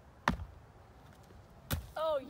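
Two thuds of feet landing from a parkour flip combo over wooden tree stumps, about a second and a half apart.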